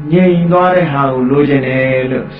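A Buddhist monk's voice in a slow, drawn-out, chant-like recitation. The syllables are held steadily and the pitch rises and falls gently.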